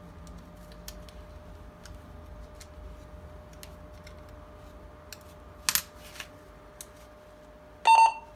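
Small clicks and taps of plastic handheld-radio parts being fitted together by hand, with a sharper double click a little over halfway through, over a faint steady hum. Just before the end comes a short, loud electronic beep as the Motorola HT750 radio is handled.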